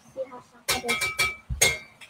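Kitchenware clinking: a few quick ringing clinks about two-thirds of a second in, then a heavier knock with a short ring.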